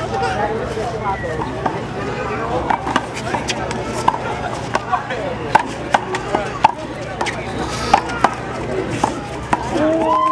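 Handball rally: a series of sharp, irregularly spaced smacks as the ball is struck by hand and rebounds off the concrete wall and court, with voices talking in the background.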